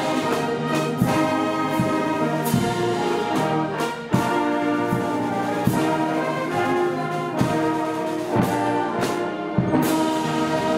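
A massed brass band plays a slow piece in full sustained chords, with trombones and trumpets to the fore. Regular strokes mark the beat a little more than once a second, and there is a brief break in the sound about four seconds in.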